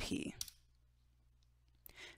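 The tail of a spoken word, a near-silent pause, then a single computer-keyboard keypress near the end: the Enter key running a copy command.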